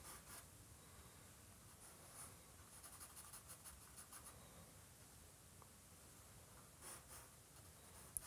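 Faint scratching of a compressed charcoal stick shading on drawing paper, in a few runs of short strokes, the longest from about two to four and a half seconds in, with another near the end.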